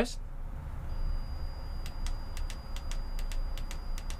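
Sharp clicks of a Minn Kota i-Pilot Micro remote's buttons being pressed, about a dozen in the second half, while the remote is paired with the trolling motor. A faint steady high-pitched tone is heard with them, over a low rumble.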